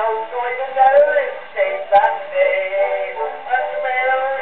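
An early acoustic 78 rpm disc from about 1911 playing on a horn gramophone: a man singing a music-hall comic song with accompaniment. The sound is thin with no bass, with a sharp surface click about two seconds in.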